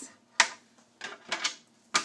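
Sharp clicks and short scrapes from a scoring stylus and cardstock on a grooved plastic scoring board: a click about half a second in, a few brief scraping strokes around the middle, and another click at the end.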